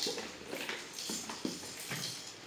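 Several light clicks and knocks, spaced roughly half a second apart, from small plastic baby items being handled beside a plastic bath basin.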